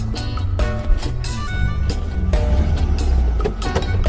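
Background music with a steady beat, over the air-cooled flat-four engine of a Volkswagen Beetle running.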